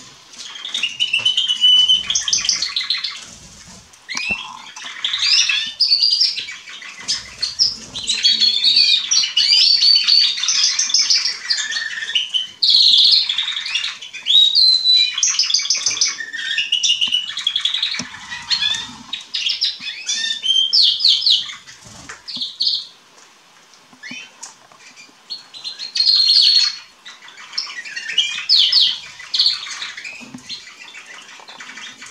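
Canaries, domestic and wild-type Atlantic canaries, singing: rapid trills and quickly repeated warbled notes. Several birds overlap in near-continuous song, which eases briefly about three-quarters of the way through.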